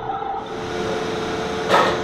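A steady machine hum carrying one constant tone, with a brief rush of noise near the end.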